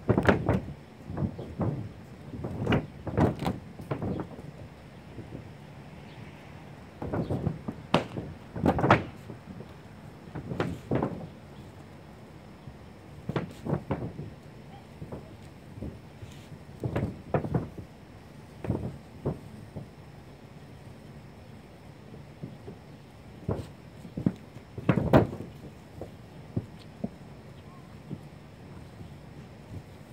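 Scattered, irregular thumps and knocks on a mobile home's roof, in short clusters with quiet gaps between, as a man walks the roof and rolls roof coating along the edges with a long-handled paint roller.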